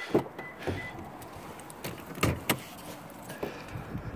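2016 Toyota Tacoma front door being opened and worked: a handful of separate latch clicks and knocks, with a faint high beep broken up in the first second.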